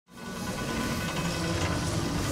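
Intro sound effect for a logo animation: a swell of noise that grows steadily louder from silence, with a low mechanical clatter underneath.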